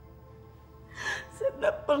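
A woman's sharp, tearful gasp about a second in, then she starts speaking through sobs, over soft background music with long held notes.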